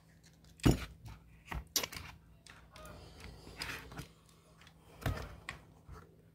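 A handheld camera gimbal's parts knocking and clicking against each other and its foam-lined hard case as it is worked into the case's cut-out insert: a few sharp clicks, the loudest about two-thirds of a second in and about five seconds in, with soft scraping between.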